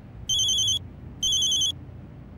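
Mobile phone ringing with a trilling electronic ringtone for an incoming call: two half-second bursts about a second apart.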